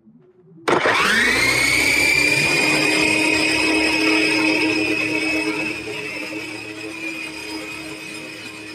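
A radio-controlled helicopter's motor and rotor, heard from the craft itself, starting up suddenly about a second in and spooling up rapidly in pitch into a loud, steady high whine as it lifts off.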